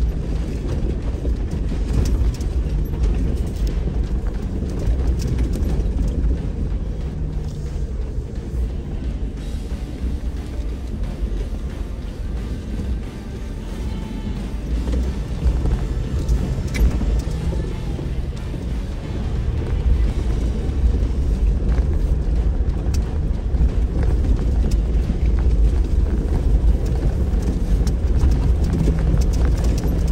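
Four-wheel-drive vehicle crawling slowly over a rocky trail, heard from inside the cab: a steady low engine rumble, with the tyres crunching and knocking now and then over loose rocks.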